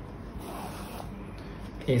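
Faint, brief rubbing and rustling as a small painted wooden box is handled and turned over on a paper-covered table, about half a second to a second in. A man's voice starts speaking at the very end.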